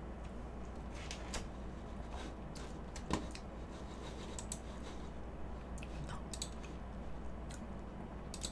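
A few faint, scattered clicks and light knocks over a steady low hum, the sharpest click about three seconds in: a computer mouse being clicked.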